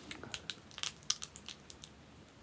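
Small scattered crackles and clicks close to the microphone: a foil-wrapped chocolate being picked open and bitten at the mouth.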